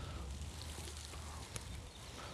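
Faint outdoor background with a steady low rumble and a single short click about one and a half seconds in.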